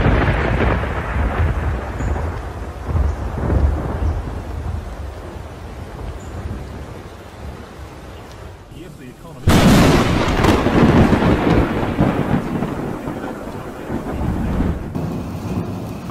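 Close thunder from lightning strikes: a loud clap at the start rolls into a rumble that fades over several seconds. A second sudden, loud clap comes about nine and a half seconds in and rumbles on.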